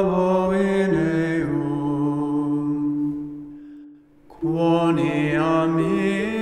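A solo male voice singing unaccompanied Gregorian chant on long held notes that step downward in pitch. The phrase fades out about three and a half seconds in, and after a short breath the next phrase begins.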